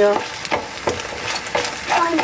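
A wooden spatula stirring and scraping scrambled eggs in a frying pan, with short scrapes about every half second over the eggs frying.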